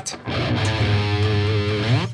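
A single low note played on an electric guitar and held for nearly two seconds, sounded to check the song's key against A flat.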